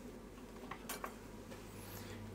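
A few faint clicks as a small screwdriver is picked up off a workbench, over a low steady hum.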